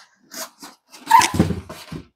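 Packing paper rustling and crinkling as a potted plant is lifted out of its shipping box. It comes in a few short bursts; the longest and loudest starts about a second in.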